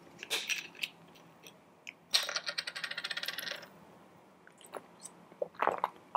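A water bottle's cap being twisted open, a fast run of sharp clicks lasting about a second and a half, followed near the end by a few soft sounds of drinking from the bottle.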